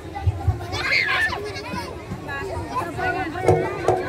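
Several children's voices chattering and calling over one another while playing on a trampoline, with two short low thumps in the first half-second.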